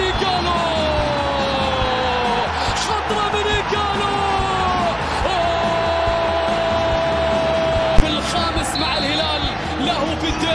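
A TV commentator's long, drawn-out cries, each held for seconds and sliding slowly down in pitch, over a steady background noise, with a single sharp click about eight seconds in.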